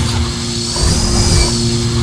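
Cinematic logo-reveal sound design over a steady music drone: a rushing whoosh swells up with a deep rumble peaking about a second in, as the logo assembles.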